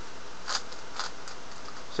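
Layers of a plastic 3x3 Rubik's cube being turned by hand, giving two short clicks about half a second apart and a fainter one after, over a steady hiss.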